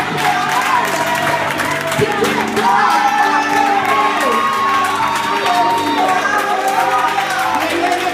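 Keyboard holding sustained chords under a congregation cheering and calling out praise, with voices singing along.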